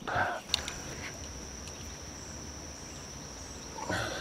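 Steady high-pitched drone of insects, over a faint low rumble and a few light knocks from the camera being handled.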